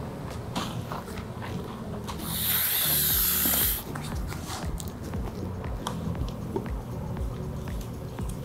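Wet squishing of shampoo lather being worked through hair, over soft background music. A loud hiss lasts about a second and a half in the middle and cuts off suddenly.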